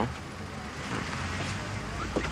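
Distant road traffic: a low, steady rumble that swells slightly in the second half.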